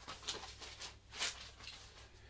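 Faint rustling and scraping of cardboard record sleeves being handled, in a few short strokes, the loudest about a second and a quarter in.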